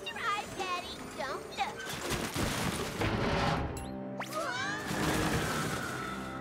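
Cartoon soundtrack: a man's strained, wavering cries over music, then a loud, noisy crashing stretch midway, and a long held cry near the end.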